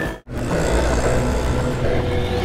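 Background music cuts off abruptly, and after a brief gap a steady low rumble of street traffic with running vehicle engines takes over.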